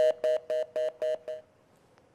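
Rapid two-note beeps from a telephone line, about four a second, that stop about a second and a half in. The call has dropped, and this is the line's busy or disconnect tone.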